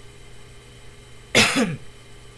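A single short cough from a person, about a second and a half in.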